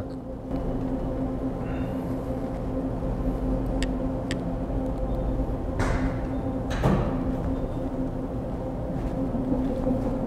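A steady low hum with a constant two-note drone runs throughout. Over it are a couple of light clicks about four seconds in and two soft knocks about six and seven seconds in, from hands working on a robot arm as it is lowered and its belt housing handled.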